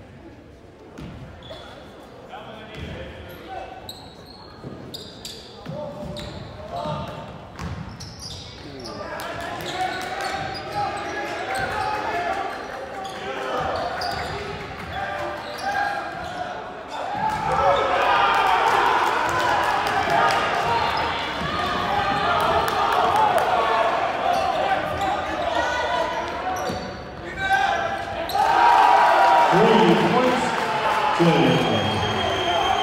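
Basketball bouncing on a hardwood gym floor under the murmur of a crowd of spectators in a large, echoing gym. The crowd's voices grow louder about a third of the way in and louder still past halfway as play runs up the court.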